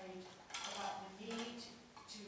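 A person speaking faintly into a meeting-room microphone, with a sharp clink about half a second in.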